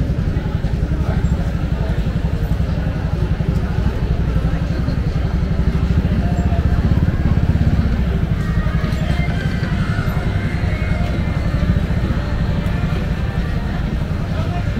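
Motor scooter engine running steadily at walking pace close by, a low rumble, with people's voices around it.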